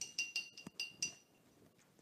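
A hard object clinking against glass about six times in quick succession over the first second, each clink ringing briefly at the same high pitch.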